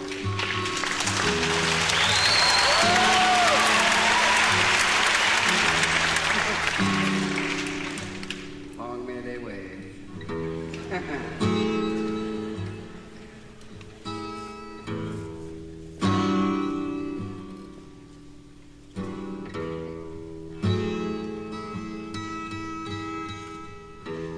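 A live audience laughs, applauds and lets out a few whoops over acoustic guitar picking. The crowd noise fades after about eight seconds, leaving a solo acoustic guitar playing a song's intro in plucked notes and occasional strums.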